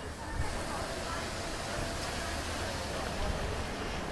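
Cars passing close by on a city street: a steady wash of tyre and engine noise that swells about half a second in, with wind rumbling on the microphone.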